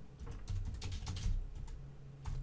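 Computer keyboard typing: a quick, uneven run of keystrokes.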